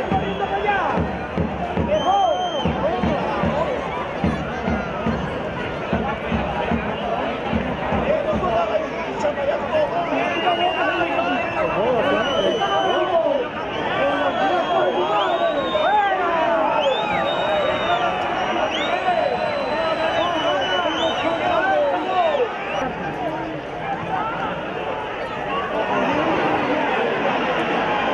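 Football crowd at a live match: many spectators shouting and calling over one another. A low fast pulsing runs under it for roughly the first ten seconds, and several short high whistle-like tones sound in the second half.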